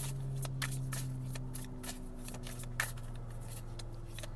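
Tarot cards being shuffled by hand: a run of quick, irregular card snaps over a low steady hum.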